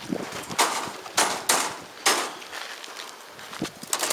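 Racing pigeons taking off in a mass release, their wings clattering in several short, irregular bursts; the loudest comes just over a second in.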